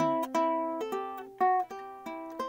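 Ukulele chords strummed between sung lines: a strum early on and another about a second later, each ringing and fading.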